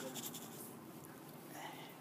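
Quiet room tone with faint rustling, in a pause between spoken words.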